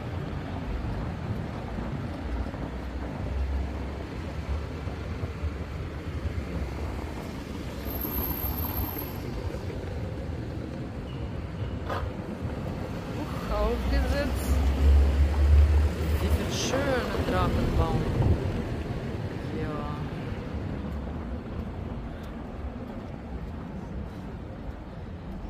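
Street sound in a narrow cobbled lane: a low car and traffic rumble that swells a little past the middle. Snatches of passers-by's voices come in around the same time.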